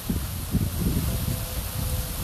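Wind buffeting the microphone: an uneven low rumble with a rustling haze above it, and a faint steady hum coming in about halfway.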